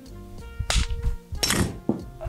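Two sharp hammer blows, just under a second apart, on a socket used as a drift to drive a polyurethane bushing out of a rusted leaf-spring bracket, with a lighter knock near the end. Background guitar music plays underneath.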